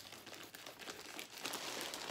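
Plastic poly mailer bag crinkling as it is pulled and torn open by hand after being cut with scissors, a rapid string of small crackles.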